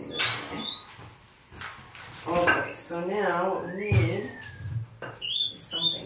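Low, indistinct talk, with several short high chirps and whistled notes from small aviary finches and a few light knocks.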